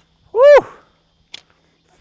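A man's single short, loud "woo!" whoop that rises and then falls in pitch, followed about a second later by a faint click.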